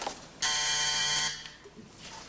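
Switchboard call buzzer sounding once for just under a second, a steady harsh buzz that signals an incoming call to the operator.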